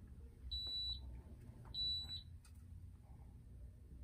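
Two short, high electronic beeps, each about half a second long and about a second apart, from the racket-measuring station's RDC machine and digital scale as a measurement starts. Faint handling clicks come between them.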